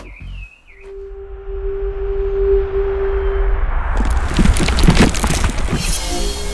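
Outro logo sting sound design: a held single tone and a swelling rush of noise that build into a cluster of sharp hits from about four seconds in.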